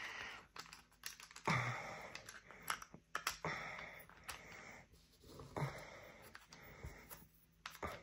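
Cardboard game tiles being handled and pressed into a 3D-printed plastic holder: scattered light clicks and taps, with short rustling slides between them.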